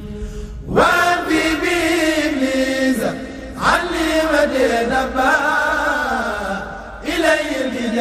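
A single voice chanting Arabic devotional verse, a Mouride xassida, in long drawn-out melismatic notes that slide up and down in pitch. There are short breath pauses about three seconds in and near the end.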